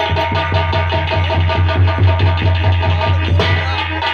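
Live nautanki accompaniment: a drum beaten in a fast, even rhythm over steady held tones.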